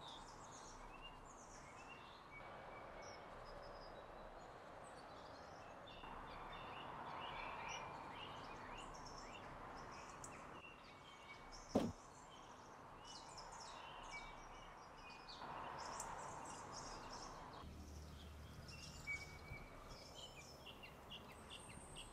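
Faint outdoor background noise with small birds chirping on and off. One sharp click sounds about twelve seconds in.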